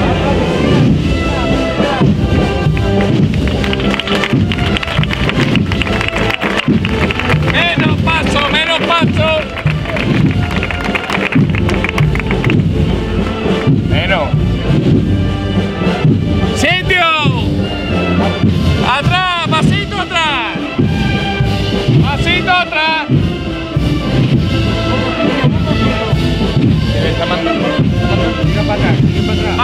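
Brass and wind band playing a processional march, loud and continuous, with voices in the crowd now and then over the music.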